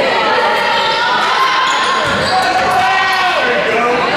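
Spectators' voices mixed with a basketball bouncing on a hardwood gym floor during play, all echoing in the gymnasium.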